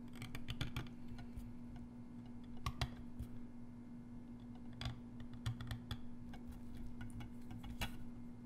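Steel engraving knife cutting into a stone seal held in a brass carving vise: clusters of short, scratchy clicks as the blade chips the stone, with pauses between strokes. A steady low hum runs underneath.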